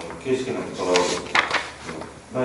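Speech only: a person talking in a small meeting room.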